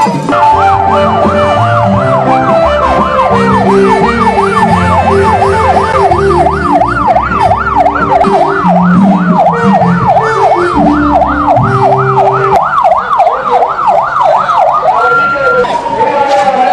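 A patrol vehicle's electronic siren yelping, its pitch rising and falling about three times a second, with music and a bass line underneath. Near the end the siren holds one steady tone for a moment.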